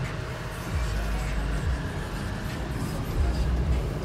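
Cabin noise inside a 2016 Nissan Rogue on the move: a steady low rumble of road and 2.5-litre engine noise, with a few slow falling sweeps, under the even rush of the air-conditioning fan.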